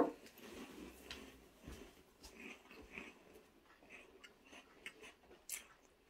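Faint, scattered crunching and mouth sounds of someone chewing a Mini Cheddars cheese biscuit, with small clicks and one sharper click near the end.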